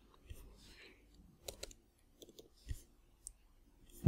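A handful of faint, irregular clicks from a computer mouse and keyboard in use, with near silence between them.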